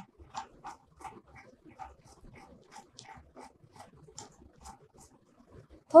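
Faint small clicks and rubbing as steel socket cap bolts are screwed into a square hydraulic flange by a gloved hand, about three light ticks a second.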